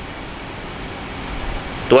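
Steady background noise with a low rumble that swells a little toward the end. A man's voice starts right at the end.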